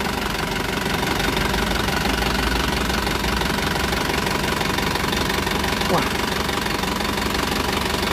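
Isuzu Elf NLR 55 BLX diesel engine idling steadily, heard close up in the open engine bay. The engine is hot, and the owner says it shows no blow-by and no oil seeping.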